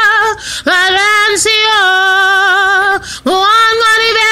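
A woman singing unaccompanied in a slightly hoarse voice, holding long notes with vibrato, with a quick breath about half a second in and another at about three seconds.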